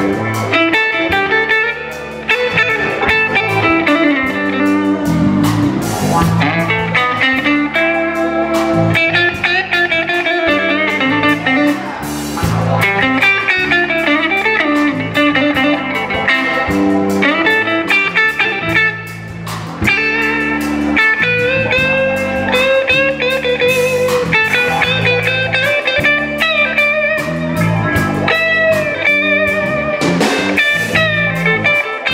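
Live blues band playing an instrumental passage: electric guitars, electric bass and drum kit. An electric guitar lead line with bent, wavering notes runs over the rhythm, and the band drops back briefly twice.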